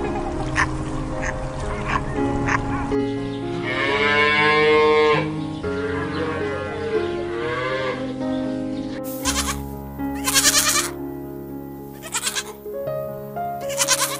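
Goat bleating over background music: a long quavering bleat about four seconds in and shorter ones after it, then several short, loud bleats in the last five seconds.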